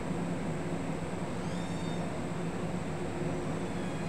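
Steady low hum of room background noise, with a faint cluster of high-pitched tones for about half a second near the middle.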